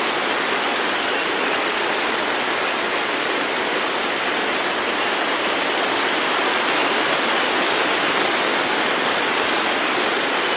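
Steady rushing noise, even and unbroken, like running water or heavy hiss.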